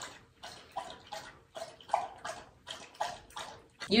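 A dog lapping water from a bowl, in a steady rhythm of about three laps a second.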